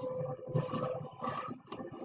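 Computer keyboard keys typed in a short, irregular run of clicks.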